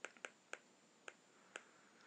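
Faint, irregular clicks of a stylus tip tapping on a tablet screen during handwriting, about five in two seconds.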